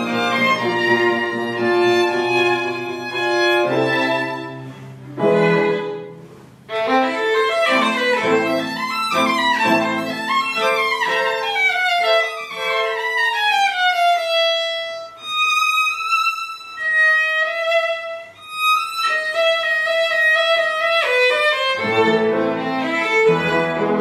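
String quartet of two violins, viola and cello playing classical music live. After a brief break about six seconds in, a high violin line falls in steps over the accompaniment, thins to a mostly high line for several seconds, and the low strings come back in near the end.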